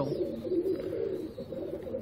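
Domestic pigeons cooing softly, a low murmuring call.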